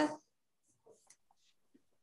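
The end of a spoken word, then near silence with a few faint, scattered rustles and clicks.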